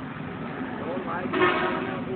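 Voices in the background over a steady low hum of street traffic, with one brief louder sound about one and a half seconds in.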